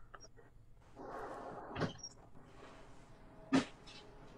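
Quiet handling noise: a soft rustle about a second in, a short knock just before the middle, and another short knock near the end.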